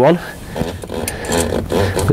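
A man's voice, low and indistinct, talking under his breath, with no distinct tool or mechanical sound standing out.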